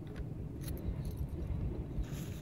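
Wind rumbling on the microphone, with a few brief metallic rattles and rustles from tent gear being unpacked and handled.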